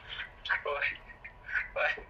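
A voice heard over a mobile phone call on speakerphone, thin and tinny through the phone's speaker.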